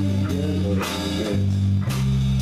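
Punk band rehearsing: electric guitar and bass guitar playing over a drum kit, with two loud drum-kit hits about a second apart.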